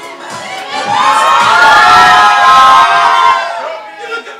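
A crowd screaming and cheering, many high voices held together at once, swelling about a second in and fading away near the end.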